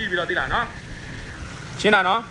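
A man speaking, with a pause of about a second in the middle where only faint background noise remains.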